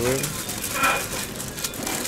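Aluminium foil and a thin plastic bag crinkling and rustling as hands unfold a foil-wrapped food parcel.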